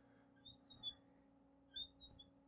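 Marker squeaking on a glass lightboard as small circles are drawn: a few short, high squeaks over faint room hum.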